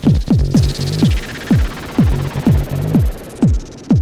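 Instrumental electronic music made on analog hardware: a deep kick drum in a broken, syncopated pattern, each hit dropping sharply in pitch, over a synth bass line. A hissing filtered sweep falls in pitch over about two seconds, twice.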